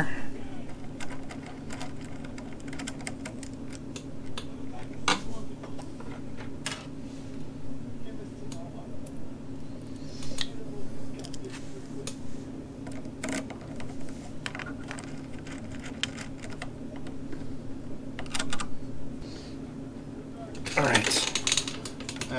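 Scattered metallic clicks, taps and scrapes of a screwdriver and a small screw against a scooter's steel body as a ground wire is screwed down, over a steady low hum.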